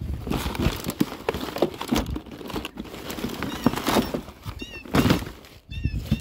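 Household junk being rummaged through by hand in a plastic tote: plastic crinkling, with irregular rustles, light knocks and clatters as items are shifted.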